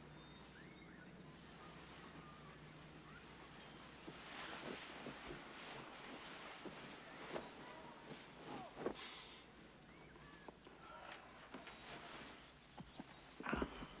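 Quiet room with faint, short chirps from a small caged bird, with soft footsteps and clothing rustle. Near the end a thump and rustle as a man sits down heavily on a sofa.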